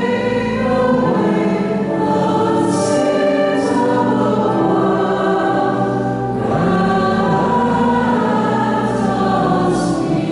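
A church choir singing slow, sustained sung notes, with the words' hissed consonants heard now and then.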